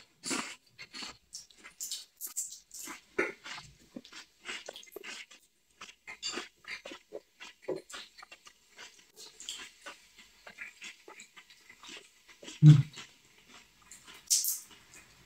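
Close-up eating sounds: irregular chewing and crunching of fried wontons, mixed with scattered short clicks of chopsticks against bowls and plates.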